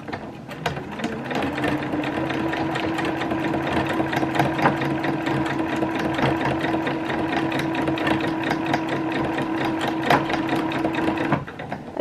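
Domestic electric sewing machine stitching at a steady speed: the motor winds up about a second in, runs evenly, and stops shortly before the end.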